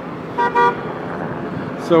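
A vehicle horn gives a short toot about half a second in, over a steady hum of street traffic.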